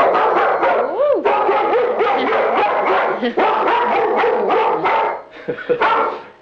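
German Shepherd barking rapidly and without a break at the doorbell, the habitual guard-barking at the door being addressed here. The barking eases off briefly about five seconds in.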